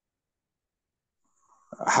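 Dead silence from a video call's gated audio, then a breath and a man's voice starting in Arabic near the end.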